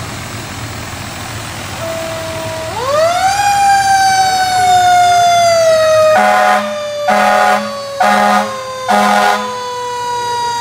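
Fire truck siren winding up about three seconds in over the low rumble of the truck's engine, then sliding slowly down in pitch, with four blasts of its air horn near the end.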